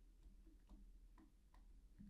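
Near silence with several faint, light ticks of a stylus tapping a tablet screen while handwriting.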